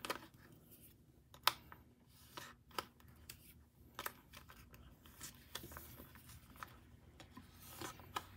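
Faint crinkling and clicking of plastic photocard sleeves being slid into the clear pocket pages of a binder, a scatter of short sharp crinkles with the sharpest about one and a half seconds in.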